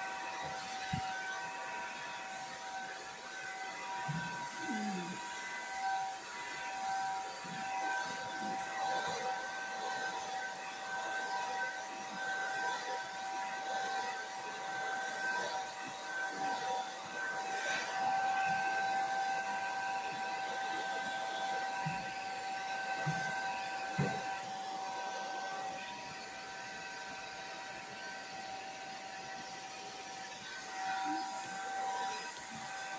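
Handheld hair dryer with a comb attachment running steadily: a rush of air with a steady high whine from the motor. It drops slightly in level a few seconds before the end.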